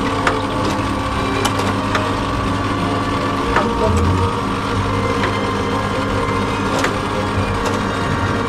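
Small motors and gear mechanisms of a nativity-scene display running steadily, with scattered light clicks.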